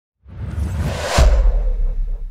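Logo-sting sound effect: a whoosh swells from about a quarter second in and peaks just over a second in with a deep bass boom that rings on.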